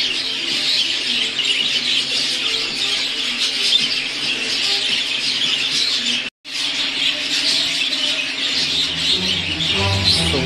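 A flock of budgerigars chattering and chirping continuously, a dense high-pitched twittering. The sound cuts out for a moment about six seconds in.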